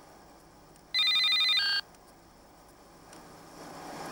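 Mobile phone ringing with an electronic trilling ringtone: one burst about a second in, lasting under a second, with its tone changing just before it stops.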